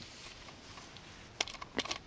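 Faint hiss, then a few small sharp clicks about one and a half seconds in, from a plastic toy submarine being handled.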